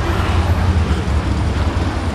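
Street traffic noise: a steady low rumble with a faint hiss above it.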